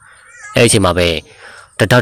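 A man's voice narrating a story, in two spoken stretches with drawn-out, pitch-bending syllables.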